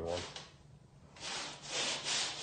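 A rough rubbing, scraping noise lasting nearly a second, starting a little past halfway.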